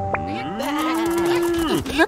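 A cow mooing: one long moo that swells up, holds steady, and falls away at the end.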